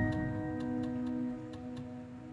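Background music: a chord of several held notes, slowly fading, over a soft, steady ticking like a clock.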